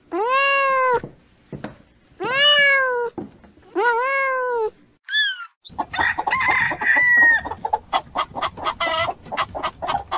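A kitten meowing: three drawn-out calls about a second each, then a short one. About six seconds in, a crowded flock of white broiler chickens in a poultry house takes over, many birds clucking at once over a steady din.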